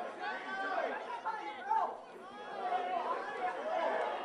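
Several people's voices talking and calling out over one another, with no words clear.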